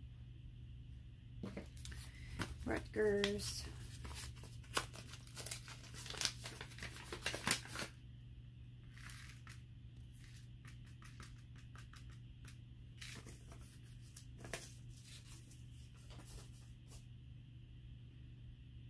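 Paper seed packet crinkling and rustling as it is handled and opened and seeds are tipped out into a palm. The crinkling is busiest and loudest in the first half, then falls to scattered fainter rustles.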